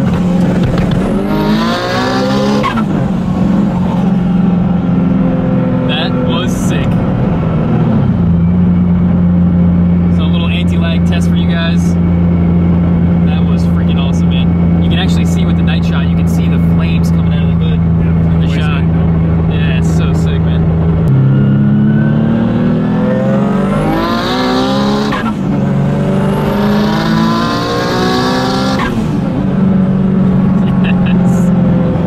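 Mitsubishi 3000GT VR-4's turbocharged V6, heard inside the cabin, revs hard through a gear with a high turbo whistle. It then holds a steady engine speed for over ten seconds while the anti-lag system makes a string of sharp pops and crackles, a rolling anti-lag test. Near the end it makes another full-throttle pull, revving up through the gears.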